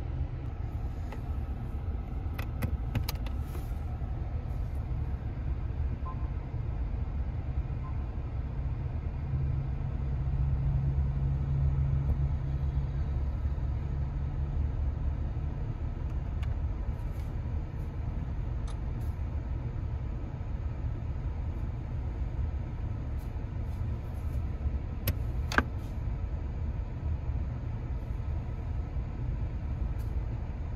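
Low, steady rumble of a Nissan Frontier pickup's engine idling, heard inside the cab, swelling a little in the middle. A few light clicks fall near the start and one sharper click comes about 25 seconds in.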